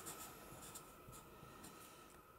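Faint scratching of a felt-tip marker writing letters on paper.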